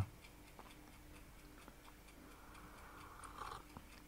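Faint, regular ticking, about two ticks a second, in an otherwise quiet room.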